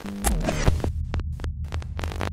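Electronic intro sound design: a deep, steady bass hum throbbing under a run of sharp glitchy clicks and stutters.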